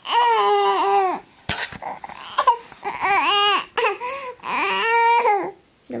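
Infant fussing and crying: three drawn-out, high-pitched wails of about a second each, with shorter whimpers between them.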